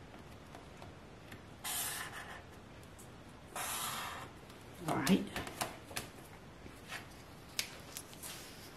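Two marker strokes drawn along a ruler on a painted board, each a scratchy swipe of about half a second, about two seconds apart. A few light clicks and knocks follow as the ruler is handled and lifted off.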